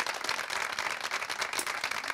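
Studio audience applauding: steady clapping from many hands.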